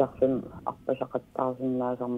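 Speech only: one person talking.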